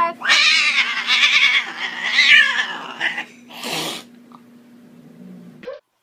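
A cat yowls: one long, drawn-out call that wavers up and down in pitch for about three seconds, followed by a short noisy burst at about four seconds. A faint steady hum runs underneath.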